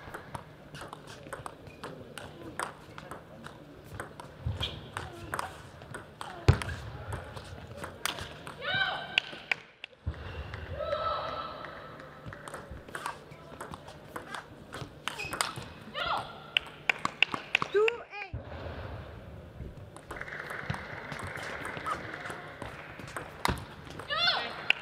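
Table tennis rallies: a plastic ball clicking off rackets and the table in quick back-and-forth strokes, in several separate runs, with brief voice shouts between some of them.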